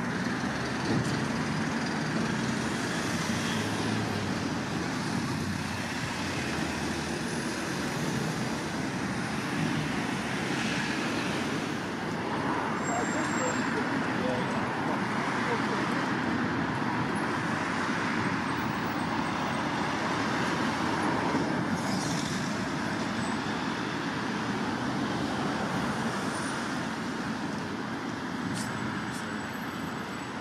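Steady street ambience: road traffic noise running throughout, with faint, indistinct voices.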